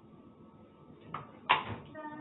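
Brief fragments of a person's voice, with a single sharp knock-like sound about one and a half seconds in.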